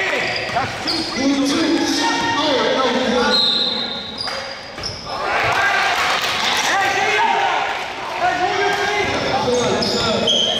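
Basketball being dribbled on a hardwood gym floor during a game, with players and spectators shouting and brief high squeaks scattered throughout, all echoing in a large gym.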